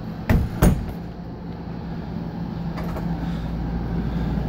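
RV bathroom door being shut: two sharp knocks about a third of a second apart, the door meeting the frame and latching, over a steady low hum.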